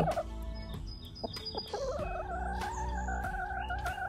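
A hen gives one long, wavering call lasting about two seconds, starting about halfway through, with background music underneath.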